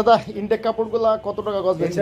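A man's voice talking, with no other clear sound.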